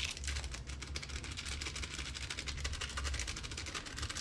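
Small plastic spice packet crinkling in the fingers as ground cumin is shaken out of it, a fast run of fine crackles over a steady low hum.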